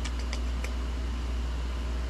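Steady low hum of the shop's ventilation fans, with a few faint light ticks in the first second.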